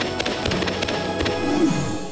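Twinkling, bell-like magic chimes over music: a cartoon sparkle effect for a spell taking hold, with a high shimmer held throughout and quick tinkling strokes.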